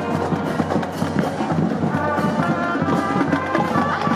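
Marching band playing: trumpets, mellophones and sousaphone holding notes over a steady drum beat.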